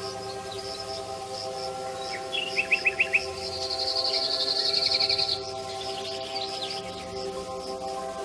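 Recorded birdsong laid over soft sustained background music. A bird gives a run of five quick chirps about two and a half seconds in, then a rapid high trill from about four to five seconds, over a faint regular high pulsing.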